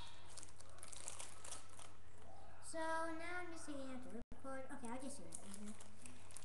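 Packaging crinkling as kit parts are handled, then from about three seconds in a child humming a short wordless tune, with a momentary dropout in the audio.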